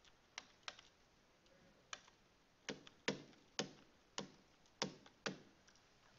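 Faint, sharp taps of a stylus on a writing tablet as numbers are handwritten, about ten in all, irregular at first and then roughly two a second in the second half.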